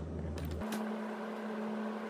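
Steady low mechanical hum of room equipment, which switches abruptly about half a second in to a higher, steady hum.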